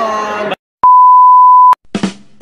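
A single loud, pure, steady beep lasting about a second, starting just after the voices cut off and stopping abruptly: a censor-style bleep sound effect.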